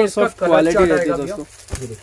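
A man's voice talking, not clearly worded, with a brief thump near the end.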